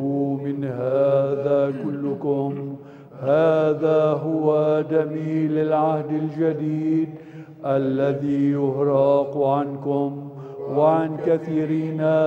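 Byzantine liturgical chant in Arabic: voices singing a melody over a steady held low drone (ison), in long phrases with short breaks between them.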